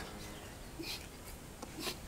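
Faint outdoor ambience with a few short, high bird chirps.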